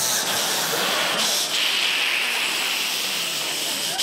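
A man hissing long and steadily through his teeth, imitating a vampire recoiling; the hiss grows stronger about a second and a half in.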